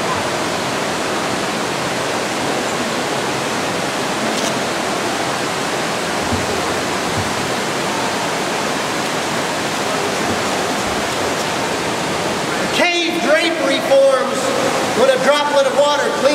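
Water pouring over a four-foot man-made dam in a cave, a steady rushing noise. About thirteen seconds in, the rushing drops abruptly and a voice begins talking.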